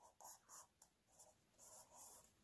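Faint scratching of a black felt-tip marker drawing on squared notebook paper: a series of short strokes, with a small tick a little under a second in.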